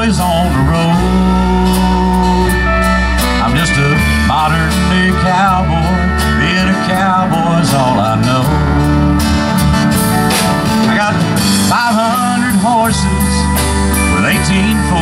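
Instrumental break in a live country song: acoustic guitar strumming over bass and drums with steady cymbal ticks, while a lead guitar plays a solo line full of bent, wavering notes.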